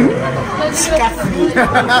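Speech only: people chattering and talking over one another.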